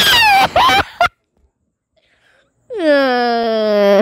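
A voice wailing: a short high cry falling in pitch at the start, then, after about a second and a half of silence, a long drawn-out wail that drops in pitch and then holds one note.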